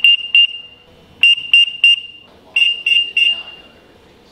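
ZKTeco SpeedFace-V5L [TD] terminal sounding its high-temperature alarm: a high-pitched electronic beep pulsed in quick groups of three, a group roughly every second and a half. The alarm signals a body temperature above the set threshold.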